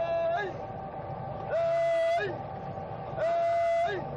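A trainera coxswain's long held shout at the same pitch each time, three cries about a second and three-quarters apart in time with the crew's strokes, each dropping off at the end, over a steady rush of water and oar noise.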